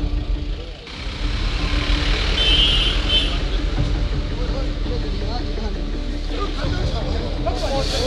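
A vehicle running amid street noise and crowd voices, with people shouting near the end.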